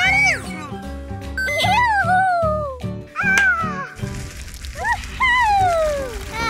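Cartoon background music, with about four wordless gliding calls over it, each rising and then falling in pitch.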